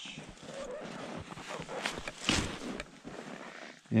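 Irregular scraping and rustling of snow and climbing gear during a roped lower down a snow couloir, with a few louder scuffs a little past halfway.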